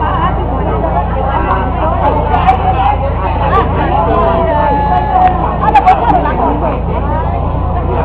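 Many voices talking at once in a loose crowd babble over a steady low hum, with a few sharp knocks about six seconds in.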